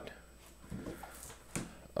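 Quiet handling of a headphone retail box, faint rubbing and shuffling of the packaging, with a single light knock about one and a half seconds in.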